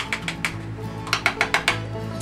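Quick sharp clicks and taps of a spatula knocking against a mayonnaise jar and a saucepan as mayonnaise is scraped in, a few at first, then a rapid run of about eight in the middle. Background country music plays under it.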